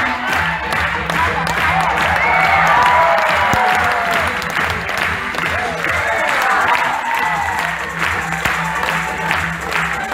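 Music with a steady beat, with an audience clapping and cheering over it.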